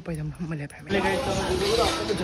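A man talking, then about a second in a sudden change to a steady hiss with voices over it.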